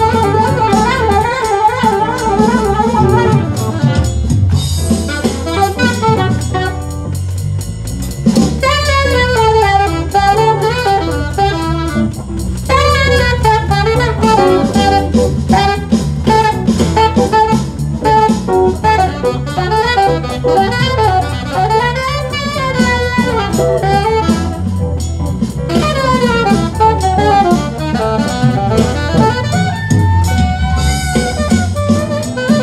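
Alto saxophone playing a jazz melody with wavering, ornamented runs, over keyboard accompaniment and a steady low beat.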